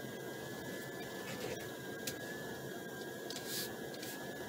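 Steady low hum of a car cabin with the engine running at low speed, under a faint, steady high whine. A short hiss comes about three and a half seconds in.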